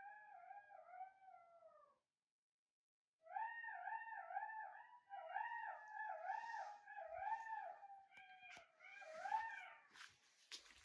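Golden jackals howling, a chorus of high, wavering, quavering calls. One burst of calls fades out about two seconds in, and after a pause of about a second the chorus starts again and runs on to near the end.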